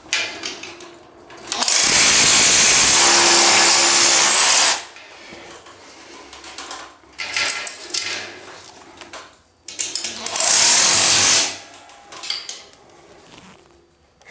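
Cordless SDS rotary hammer drilling into the wall through a metal drywall profile, to fix it with hammer-in plugs. It runs in two bursts, about three seconds long early on and under two seconds later, with tool and profile handling sounds between them.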